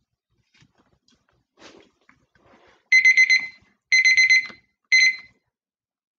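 Electronic countdown timer going off: three bursts of rapid, high-pitched beeps about a second apart, starting about three seconds in. It signals that a 90-second work period has run out.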